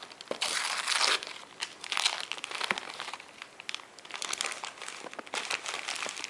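Gift wrapping paper being torn and crinkled by hand as a present is unwrapped, in irregular rustling bursts, the longest a little after the start.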